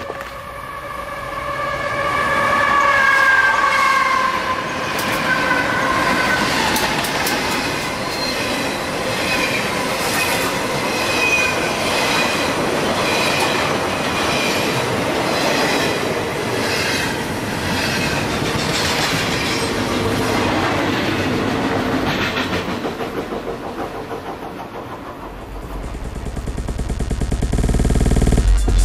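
Freight train passing: a held high tone with overtones sliding slightly lower in pitch over the first few seconds, then the wheels clicking regularly over the rail joints, dipping and then building again into a low rumble near the end.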